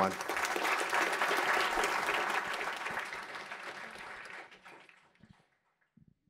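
Audience applauding at the end of a talk: dense clapping from a seated crowd that starts at once, tapers off gradually and dies out after about five seconds.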